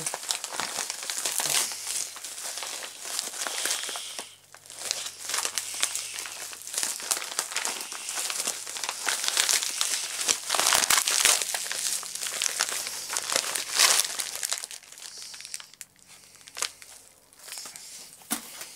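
Plastic packaging crinkling and rustling as a parcel is unwrapped by hand, with occasional tearing, in a dense run of crackles that pauses briefly about four seconds in and again near the end.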